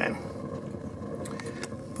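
Steady rushing of a homemade wood pellet rocket stove boiler burning, with a few faint crackles.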